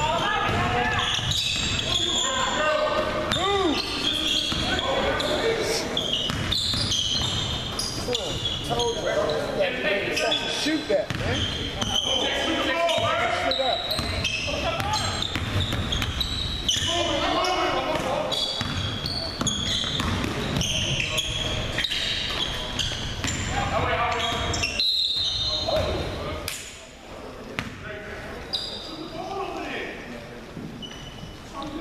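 Live basketball play in a large, echoing gym: a basketball dribbled and bouncing on the hardwood court, with sneakers squeaking and players calling out. It gets quieter for the last few seconds.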